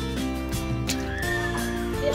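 Background music: sustained low notes with a high, wavering melody line that comes in about halfway through.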